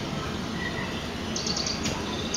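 Small birds chirping over steady background noise, with a quick run of high, rapid chirps a little past halfway.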